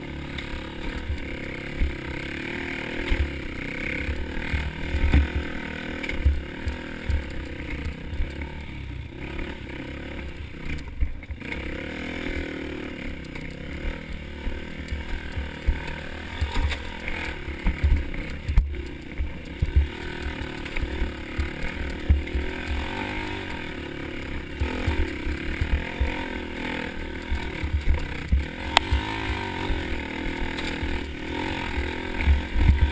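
Honda CRF150F's single-cylinder four-stroke engine running and revving up and down on a rough trail, heard through a helmet-mounted camera, with frequent low buffeting thumps on the microphone.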